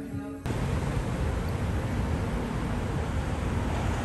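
Background music cuts off suddenly about half a second in, giving way to steady city street traffic noise: a continuous low rumble of passing cars.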